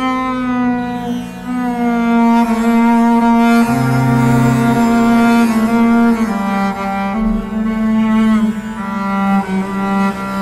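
Swedish harp bass, a carbon-fibre double bass with 39 sympathetic strings, bowed in a slow line of long sustained notes, rich in overtones. The first note comes in sharply and the pitch moves to a new note every couple of seconds.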